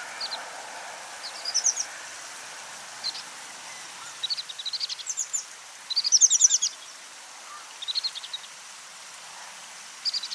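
American pipit giving short, high pip calls, some single and some in quick runs of several notes, the loudest run about six seconds in, over a steady background hiss.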